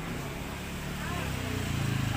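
Low hum of a motor vehicle's engine on the street, growing louder toward the end as it draws closer, with faint voices behind it.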